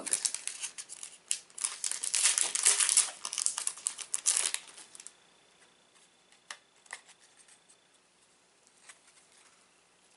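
Crinkly plastic packaging around a small enamel pin being handled and unwrapped, a dense crackle for the first four and a half seconds, then a few faint clicks.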